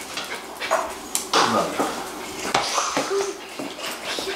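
Household sounds in a small room: brief indistinct voices, a small dog, and a few scattered knocks and clicks, one sharp click just after a second in.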